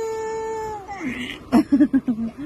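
Infant's long, high-pitched whiny cry held at one steady pitch, a strained fussing sound from a baby trying hard on her tummy. It is followed near the end by a few short, lower voice sounds.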